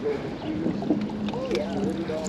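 A wet rope being hauled by hand up out of river water as a fishing magnet surfaces, with water dripping and small splashes and clicks. A distant voice and a steady low hum sit behind it.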